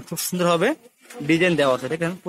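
Only speech: a man talking, with one drawn-out syllable rising in pitch in the first second, a brief pause about a second in, then more speech.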